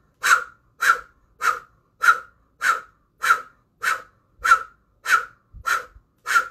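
Kundalini breath of fire through an O-shaped mouth: about ten sharp, rhythmic exhales, roughly one every 0.6 seconds, each pushed out by a navel pulse in time with a stroke of the fist.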